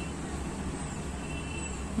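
Steady low background rumble and hiss with no distinct events, and a faint thin high tone about one and a half seconds in.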